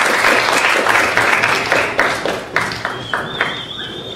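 Audience applauding, the clapping thinning out and fading away over the second half. A thin high tone sounds briefly near the end.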